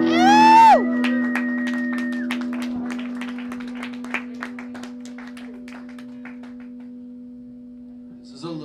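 A small audience clapping at the end of a rock song. The clapping starts loud and scattered and thins out over several seconds, just after a short pitched whoop that rises and then drops off. A steady low hum from the band's gear runs underneath.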